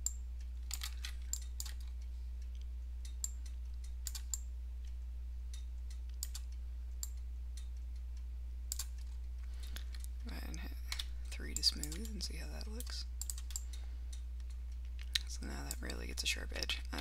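Scattered single clicks of a computer mouse and keyboard, a few a second at most, over a steady low hum.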